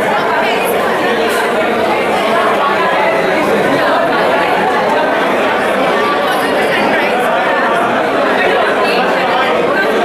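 Crowd chatter: many voices talking over one another in a large, busy hall.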